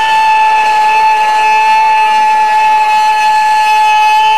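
A man's voice holding one long, high-pitched call at a steady pitch through a PA system, with no break for the whole stretch.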